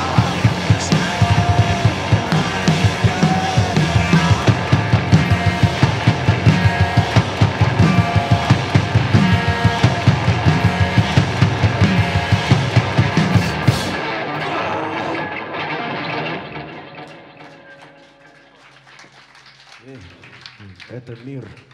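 Live rock band playing loud: a drum kit beating steadily under electric guitar. About two-thirds of the way through the drums stop, and the last chord rings on and fades out as the song ends.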